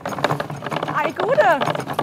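Clattering of a cargo bicycle rolling over cobblestones, with a voice calling out a greeting from about a second in.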